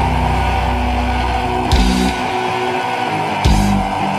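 Instrumental passage of a heavy punk-rock song: guitar holding a sustained chord, with two sharp full-band accents, one a little under two seconds in and another near the end.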